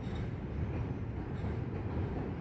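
Double-stack intermodal container train rolling across a steel truss railroad bridge, a steady low rumble of wheels and cars on the span.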